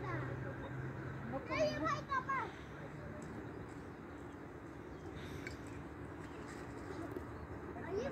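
A child's high voice calls out briefly about one and a half seconds in, then only low steady outdoor background noise.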